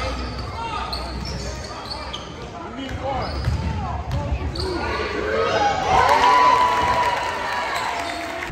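Basketball dribbled and bouncing on a hardwood gym floor, with sneakers squeaking as players cut, and voices calling out around the court.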